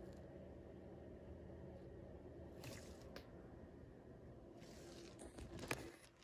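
Near silence: faint low room hum with a few soft handling clicks and rustles, twice in the middle and again near the end, as a gloved hand positions a coin under a microscope.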